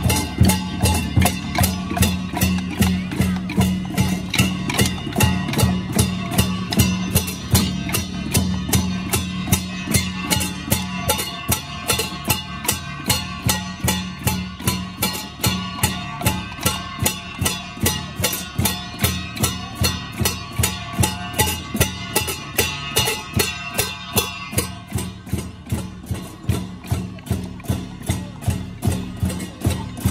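Vietnamese traditional percussion ensemble playing a steady beat of about three strokes a second. Wooden clappers (trắc) click together with a big bass drum, a hand-held gong and cymbals, over a steady low ring.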